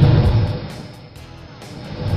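Music stinger for a countdown graphic in a sports broadcast: a loud low boom at the start that fades over about a second, then a rising swell into a second boom near the end.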